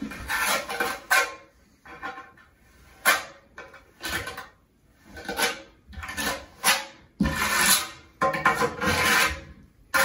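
A trowel scraping mortar across the ridged back of a large wall tile to butter it. About ten rasping strokes of uneven length, a few short and some of nearly a second.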